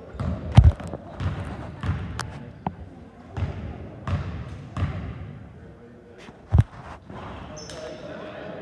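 A basketball bouncing on a hardwood gym floor, a string of echoing thuds roughly every 0.7 seconds as it is dribbled at the free-throw line. The hardest bounces come about half a second in and near the end.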